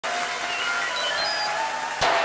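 Synthesizer intro: a steady hiss of noise with short, high bleeps dotted through it at shifting pitches.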